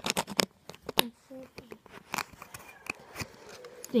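Plastic LEGO bricks clicking as a brick is pressed down onto a baseplate: a quick cluster of sharp clicks at the start, then single clicks spread out over the next few seconds.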